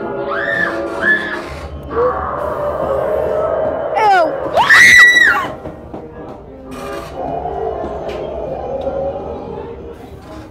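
Haunted-maze soundtrack of eerie music and effects. Two short high shrieks come in the first second, and a loud high scream rises, holds and falls about five seconds in.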